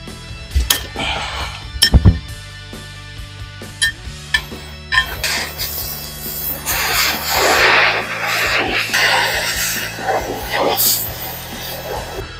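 Oxy-acetylene cutting torch hissing as it cuts through a steel lifting plate held in a vise, starting about five seconds in and running in uneven surges, over background music. A few sharp metal clanks come before the cut.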